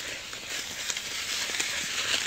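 Snow shovel blade pushing along through snow: a steady crunching scrape with a few faint clicks.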